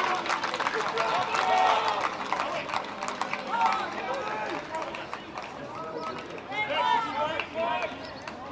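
Several voices shouting and calling out across a youth rugby league pitch, in short calls rather than connected talk, coming thicker near the end.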